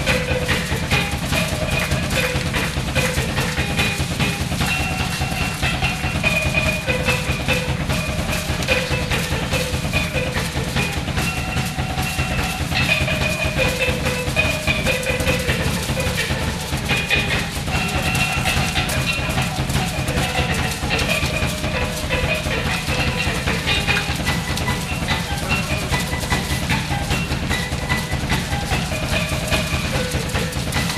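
Drum kit (Pearl drums, Paiste cymbals) played in a dense, fast, continuous pattern of strokes on drums and cymbals, with a line of short pitched notes stepping up and down over it.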